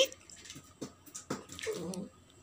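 A small dog moving on a tiled floor: a few light clicks and scuffles of its claws as it drops off a seated person's knees.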